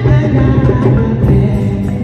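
Church choir singing a jubilee song in Bambara, with a female lead voice on a microphone, over amplified accompaniment with a steady bass line.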